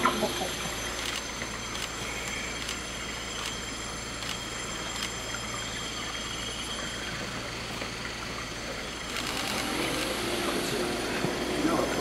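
Steady outdoor background din with faint, indistinct voices in it, growing a little louder about nine seconds in.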